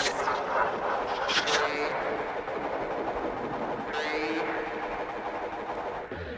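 Sparse passage of an ambient electro track: held synth tones under a dense noisy texture, with voice-like sampled sounds and a few sharp hits, at the start, about a second and a half in, and about four seconds in.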